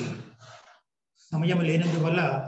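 A man's voice making long, breathy, drawn-out sighs: one trails off about half a second in, and a second, held on a steady pitch, begins a little after one second.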